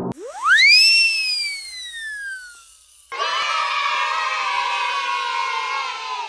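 Cartoon logo sound effects: a whistling tone swoops up in the first second, then slides slowly down. About three seconds in, a group of children cheering starts and holds steady to the end.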